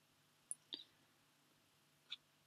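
Near silence broken by two faint computer mouse clicks about a quarter of a second apart, roughly half a second in.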